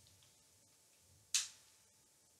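Near silence: room tone, broken once about a second and a half in by a short, soft intake of breath.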